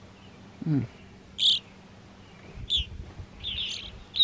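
Evening grosbeaks calling: three short, high calls about a second apart, the first the loudest.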